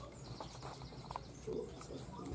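Faint light taps and rustling from a common genet moving about close to the microphone on an enclosure floor of wood shavings and boards.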